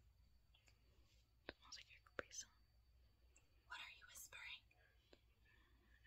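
Near silence with faint, whispered speech twice, about a second and a half in and again near four seconds, and a couple of light clicks.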